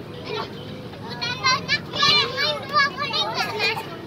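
Young children shouting and calling out in high, excited voices while playing, with a burst of quick high-pitched cries from about a second in.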